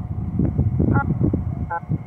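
Wind rumbling on the microphone, with two brief snatches of broken digital-voice (D-Star) audio from the radio's speaker, about a second in and near the end.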